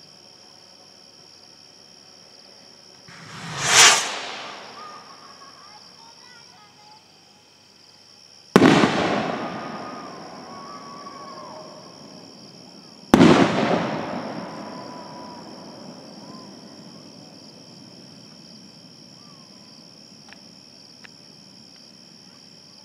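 Firework rockets going off: a rush that swells to a peak about four seconds in, then two sudden sharp bangs about four and a half seconds apart, each echoing away over several seconds.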